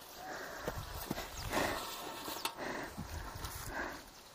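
Handling noise from laying out offerings on the ground: a few light knocks from a metal tray and bowl, with leaves rustling.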